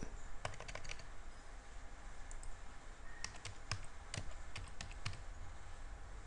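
Faint keystrokes on a computer keyboard: a dozen or so irregular, sparse key clicks as a frequency is typed in.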